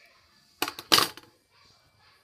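Digital calipers set down on a wooden tabletop: two quick knocks of metal on wood, about half a second apart.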